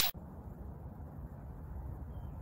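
The tail of a whoosh sound effect cuts off right at the start, followed by a steady low hiss and rumble of outdoor background noise.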